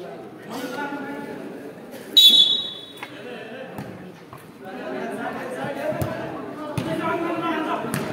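Futsal match in a covered hall: players and spectators calling out, with short thuds of the ball being kicked. A sharp, shrill whistle blast about two seconds in is the loudest sound.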